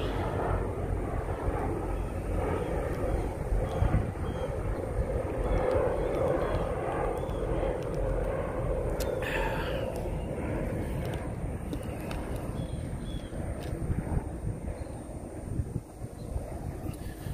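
Military helicopters flying overhead: a steady engine drone that grows loudest about halfway through and then eases off.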